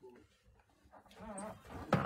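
Mostly quiet pause. A faint, short, wavering hum from a person's voice comes about a second in, and a sharp click follows near the end.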